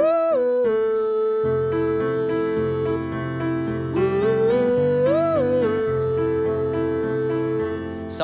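A man singing a high, held melody line over piano chords; the sung phrase swells up and falls back twice, and fuller low piano chords come in about a second and a half in. The key sits high for the singer.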